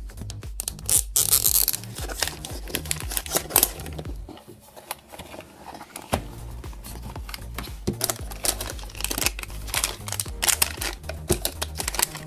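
Plastic wrapping crinkling and tearing, with the clicks and knocks of a hard plastic toy storage case being opened and handled, over background music.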